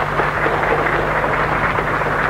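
Audience applauding after a speech: dense, steady clapping.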